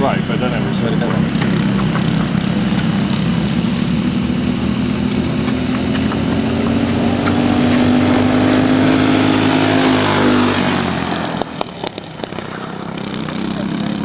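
Racing kart engines running hard as karts approach and pass close by, the pitch climbing steadily and then dropping suddenly as they go past, about ten seconds in. Afterwards the engines are quieter and farther off, growing louder again near the end.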